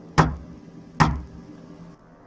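Heavy knocks, a sound effect of blows on a car roof from above: two sharp strikes under a second apart, each dying away briefly.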